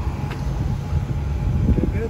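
Outdoor street noise: a steady low rumble of passing traffic, mixed with wind buffeting the phone's microphone.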